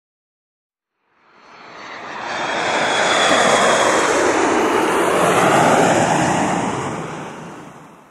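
Jet aircraft flyby sound effect: rushing engine noise swells in about a second in, holds for a few seconds, and fades away near the end.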